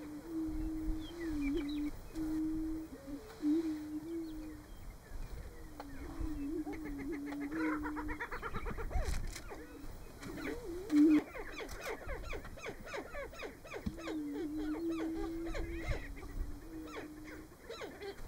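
Male greater prairie-chickens booming on a lek: a chorus of low, hollow hooting notes that goes on with short breaks. From about eight seconds in, bursts of sharper, higher calls join it.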